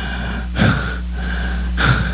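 A man breathing in sharply into a handheld microphone, twice, over a steady low hum from the sound system.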